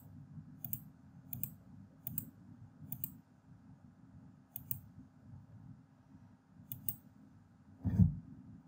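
Computer mouse button clicks entering keys one at a time on an on-screen calculator. The clicks come about every 0.7 s at first, then further apart, with a close pair near the end, over a faint steady low hum.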